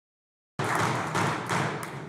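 Members of a legislative assembly applauding and thumping their desks: a dense patter of claps and knocks that starts abruptly about half a second in and eases off slightly near the end.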